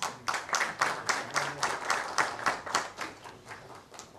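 Audience applauding, with the claps coming about four a second and dying away near the end.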